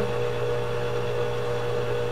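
Electric stand mixer running with a steady hum, its paddle attachment beating wet brioche dough as flour is added gradually, the dough starting to turn stringy.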